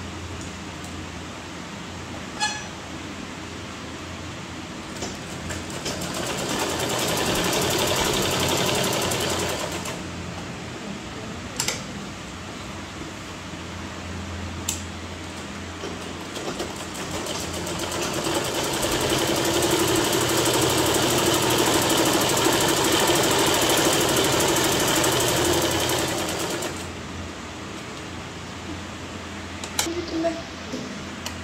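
Sewing machine stitching a seam in two runs, a shorter one of about four seconds and a longer one of about ten seconds in the second half, with a few sharp clicks between them over a steady low hum.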